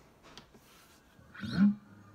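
Soft electric guitar, broken about one and a half seconds in by a short, loud vocal sound with a bend in its pitch, after which a held guitar note rings.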